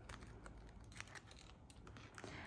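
Faint, scattered light ticks and taps of a tarot card being drawn from the deck and laid face up on the table.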